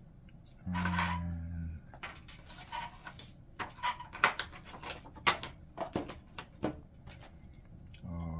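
Irregular plastic clicks, taps and rustling as a small quadcopter drone's parts and packaging are handled and lifted out of their box, with two sharper clicks near the middle.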